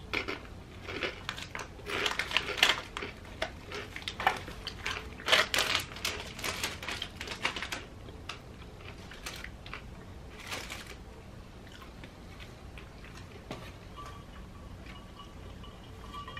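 Crunchy Takis rolled tortilla chips being chewed close to the microphone: a quick run of crisp crunches for the first eight seconds or so, a few more a little later, then quiet.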